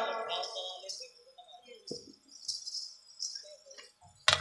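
Faint jingling of small bells in a few short bursts, about a second apart, as performers move about; a voice dies away at the start.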